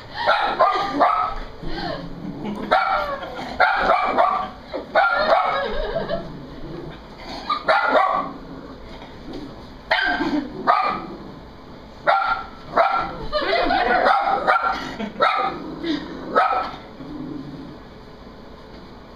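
Small white dog barking in repeated short bursts, in spells of several barks with pauses between them, quieter near the end. It is barking in fright at a large portrait picture it is scared of.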